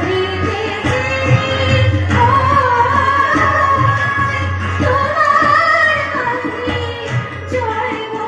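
A woman singing a Bengali devotional song in long, held, wavering melodic lines, accompanied live by tabla and other instruments, heard through a stage sound system.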